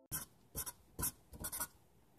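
Sharpie fine-point felt-tip marker rubbing on paper while filling in a solid black shape, in a run of short strokes about two a second.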